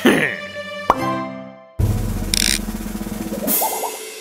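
Cartoon sound effects over background music: a falling pitch slide at the start, a sharp pop about a second in, then a sustained low pitched sound that starts suddenly just before two seconds in and runs nearly to the end.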